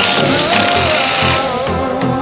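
Background music with a cordless AEG impact wrench running over it in a burst during the first second and a half.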